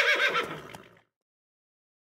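A horse whinnying, its long wavering call trailing off and ending about a second in.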